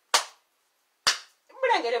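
Two sharp hand claps, about a second apart.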